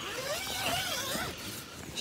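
Plastic mesh netting of a polytunnel rustling and scraping as it is pushed aside and lifted by hand, with wavering squeaks from the plastic rubbing.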